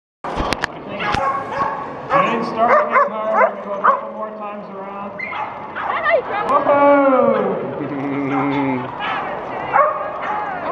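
Dogs yipping and barking over the chatter of a crowd in a large hall, with a longer falling call near the end.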